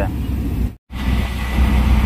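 Low road and engine rumble inside a moving car, cut off abruptly just under a second in; then the louder low rumble of a moving auto-rickshaw heard from inside.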